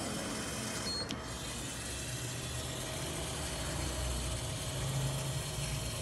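Injector test bench's pump running steadily at 3 bar during a flow test of a CB300 fuel injector, a steady hum with a hiss over it. A single click comes about a second in.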